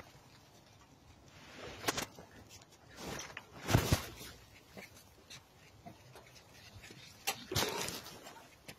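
Staffordshire bull terrier puppy making a few short, scattered sounds between quiet stretches, the loudest a little before halfway.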